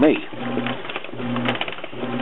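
Whirlpool WTW4950XW1 top-load washer in its wash cycle: the drive motor hums in short pulses, just under two a second, as the wash plate churns the load back and forth.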